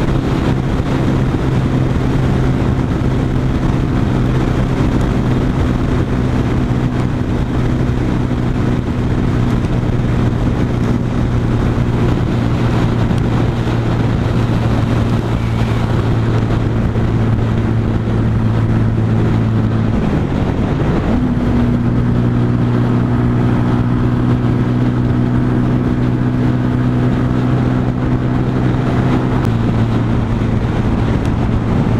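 Sinnis Outlaw 125cc motorcycle engine holding a steady cruising note at speed, with wind and road rush over the microphone. About twenty seconds in the engine note dips briefly and picks up again.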